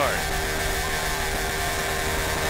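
NASCAR Cup car's V8 engine held at high revs during a burnout, rear tyres spinning against the pavement, a steady unbroken engine note.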